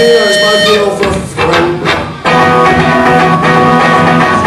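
A live rock band's amplified guitars come in suddenly and loud about two seconds in, starting the song. Before that, the singer says the song's title.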